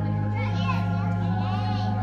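Organ playing slow held chords, with children's high-pitched voices chattering and calling over it.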